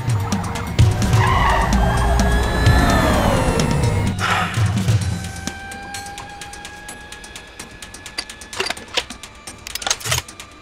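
Film-score music over car-chase effects: a car engine and a tyre squeal falling in pitch are loud through the first five seconds. The music then carries on more quietly, with a few sharp metallic clicks near the end as a pistol is loaded.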